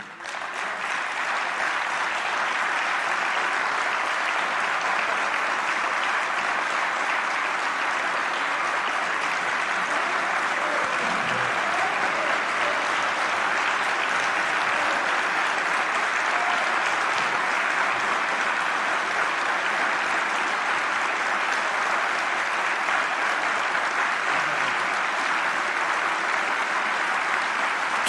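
Large crowd clapping in steady, sustained applause.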